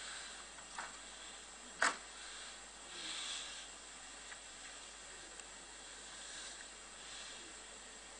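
Low steady hiss with one short sharp click about two seconds in, from a desktop RAM module being pressed into its motherboard slot.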